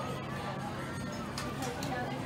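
Background babble of distant voices with faint music playing. Two soft paper crinkles come near the end as a small folded paper leaflet is unfolded by hand.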